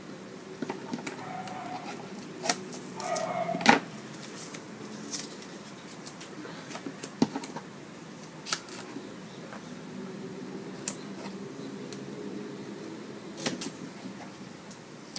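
Small scissors snipping and the light clicks and taps of hands handling cut strips of adhesive paper on a cutting mat, scattered irregularly, the sharpest tap a little under four seconds in.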